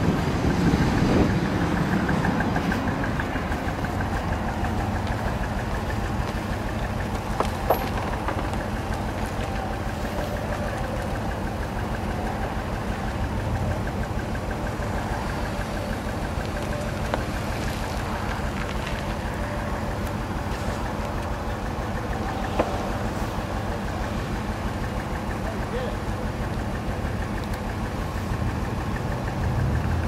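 Car engine idling steadily.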